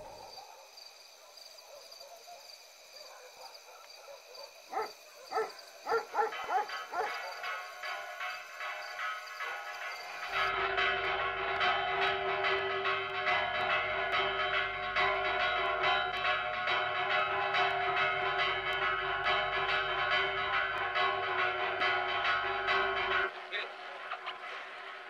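A few short calls that glide in pitch, then about ten seconds in a dense ringing of many steady overlapping tones sets in, loud and sustained, and cuts off suddenly near the end.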